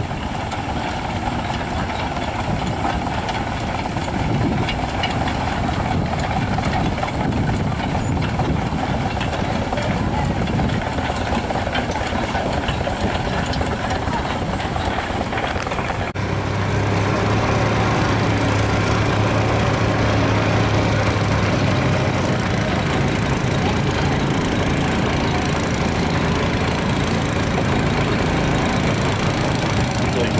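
Antique engines running steadily, with a fast, even knocking. About halfway through, the sound changes abruptly to a slightly louder, steadier engine drone with a strong low hum.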